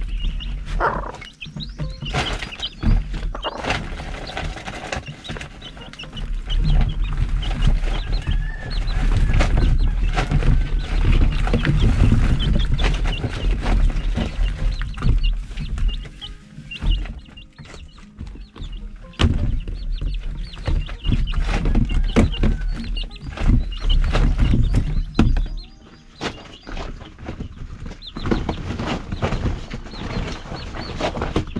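Chickens clucking among scattered knocks and rustles, over a low rumble that drops away near the end.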